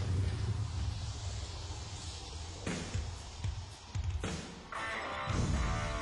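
Live hard rock band playing: a low droning bass with two crashing hits, then sustained chords come in near the end.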